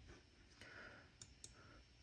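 Near silence with two faint computer mouse clicks a little over a second in, about a quarter second apart.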